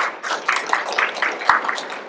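An audience clapping: a short round of applause with individual claps standing out, fading away just after it ends.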